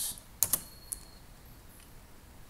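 Computer keyboard keystrokes: two quick key presses about half a second in, then a fainter one, typing "y" and Enter to confirm the install.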